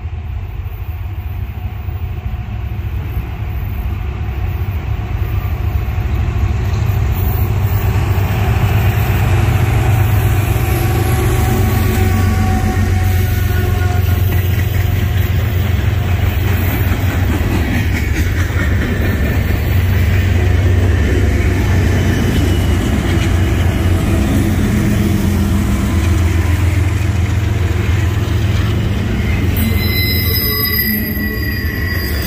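Norfolk Southern freight trains rolling past close by, a manifest of boxcars and tank cars and a double-stack intermodal: a steady low rumble of wheels and cars that builds over the first several seconds, then holds. A high wheel squeal starts right at the end.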